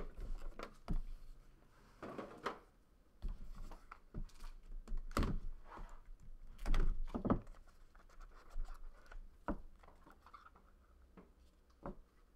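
A small cardboard card-pack box being handled and cut open with a box cutter. Irregular knocks, scrapes and rustles of cardboard and cards on a tabletop, loudest about five and seven seconds in.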